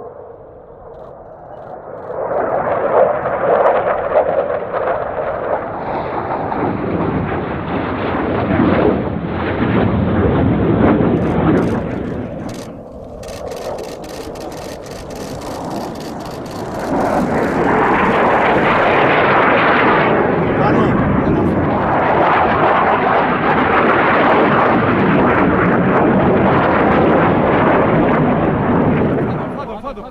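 Military fighter jets flying low past, the jet engine noise building about two seconds in, easing off in the middle and returning for a second long loud pass that cuts off just before the end. In the lull, a quick run of clicks from a camera shutter firing in burst.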